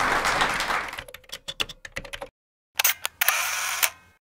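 Audience applause dying away into a few scattered claps, then a brief silence. After that comes a short camera-shutter sound effect, a sharp click followed by about half a second of steady whirring, with the production company's lens logo.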